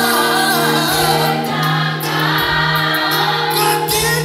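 Women's church choir singing gospel together, many voices over a steady low held note.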